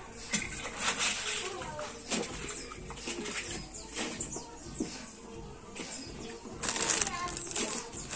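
Indistinct background voices mixed with short chirps and scattered light clicks, with a louder burst of rustling noise about seven seconds in.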